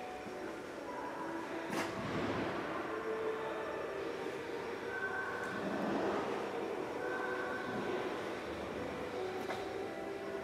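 Steady background noise of a large reverberant exhibition hall, with scattered brief faint tones and one sharp click a little under two seconds in.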